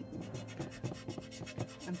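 Fingers rubbing and pressing masking tape down over the eye holes of a craft pumpkin: a run of soft, irregular scratchy rubs and small clicks.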